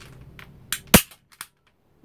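Hand-operated metal staple gun fired once: one loud, sharp snap about a second in, with a softer click just before it and a faint click after.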